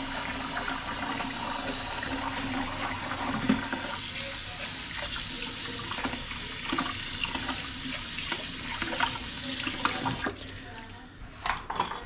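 Kitchen faucet running into a stainless steel sink while a bowl is scrubbed under the stream with a dish brush, with light knocks of the dishes. The water cuts off near the end.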